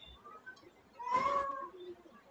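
A single short, high-pitched mewing cry of about half a second, an animal call, about a second in.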